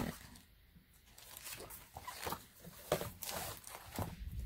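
Paper rustling and light knocks as a large book's pages are flipped and the book is closed and handled against a pile of other books and papers. It starts about a second in as a run of short rustles, with a sharper knock near the end.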